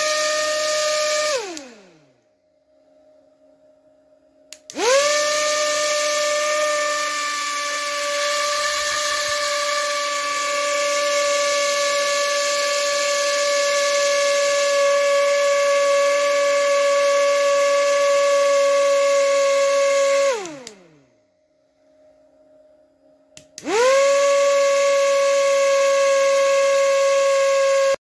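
Small high-speed DC drone motor with a plastic propeller, powered from a supercapacitor bank, whining at a high pitch as it is switched on and off. It winds down in falling pitch just after the start. It spins up again about five seconds in and runs steadily for about fifteen seconds, its pitch sagging slightly, before winding down. It starts once more near the end.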